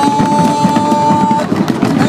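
A single steady high tone, rising slightly and held for about two seconds, cuts off about one and a half seconds in, over a dense mix of crowd sound and music.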